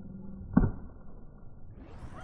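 A single sharp crack of a baseball impact about half a second in, from the pitch being hit or caught, over faint outdoor background noise.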